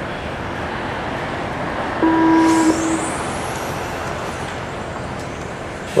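An electronic race-start tone is held for under a second about two seconds in, and a high whine then rises as the radio-controlled cars pull away, over steady outdoor background noise.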